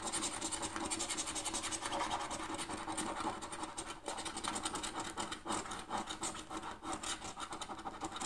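A coin scratching the coating off a paper lottery scratchcard in rapid back-and-forth strokes.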